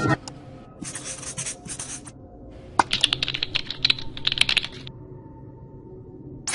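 Two bursts of rapid, irregular clicking and scratching, like fast typing: one short burst about a second in and a longer one from about three to five seconds in.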